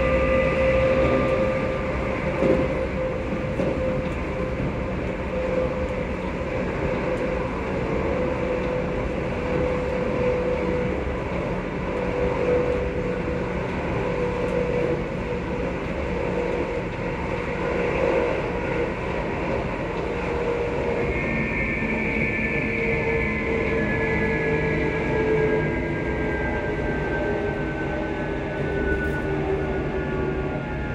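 Passenger train running, heard from inside the carriage: a steady rumble of wheels and running gear with a constant hum. In the last third a higher whine slides slowly downward in pitch.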